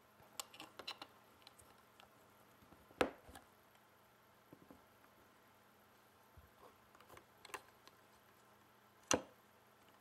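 Scattered faint clicks and taps of small 3D-printed plastic parts being handled and fitted together while elastic bands are strung on. The sharpest click comes about three seconds in, and another strong one comes near the end.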